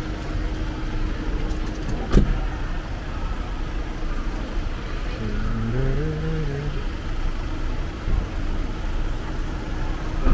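Steady rumble of idling vehicles and traffic, with a single sharp bang about two seconds in from the white van's sliding door being shut. Around the middle a short pitched sound rises and falls.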